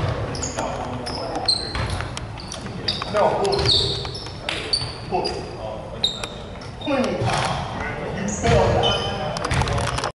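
Basketball game sounds in a gym: sneakers squeak on the hardwood court again and again in short high chirps, a ball bounces, and voices talk and call out around the court.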